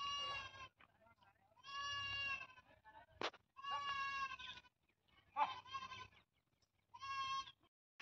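Goats bleating: five separate high-pitched bleats spread over the few seconds, each lasting about half a second to a second. A single sharp click comes about three seconds in.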